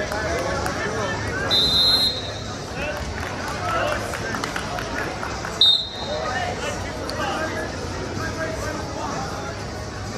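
Two short blasts of a referee's whistle, the first about a second and a half in and a briefer one near six seconds in, over spectators' voices and shouts.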